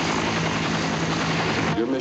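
Bell UH-1 Huey helicopter running close overhead: a loud, steady noise of turbine and rotor with a low steady hum. It cuts off near the end as a man's voice begins.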